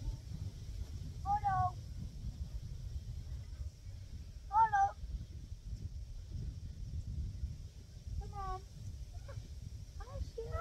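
A bottle-fed lamb bleating three times, short high calls that slide downward, as it comes looking for its milk bottle. A steady low rumble of wind on the microphone runs underneath.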